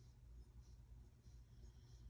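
Near silence: room tone with a steady low hum and faint soft high ticks about twice a second.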